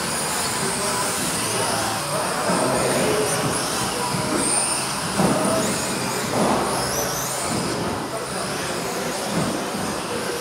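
Electric 1/10-scale RC buggies with 17.5-turn brushless motors racing on an indoor carpet track: high motor whines rising and falling as they accelerate and brake, over a steady hiss of tyres and hall noise. A couple of thumps about five and six and a half seconds in.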